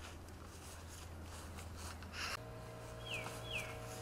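Quiet outdoor background with a faint low hum; about three seconds in, a bird gives two short down-slurred whistles in quick succession.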